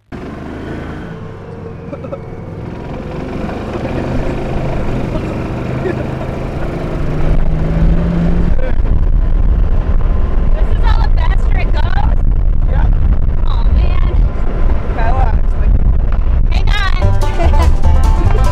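An open utility vehicle drives along a gravel road, giving a steady low rumble of engine and wind on the microphone that grows loud about seven seconds in.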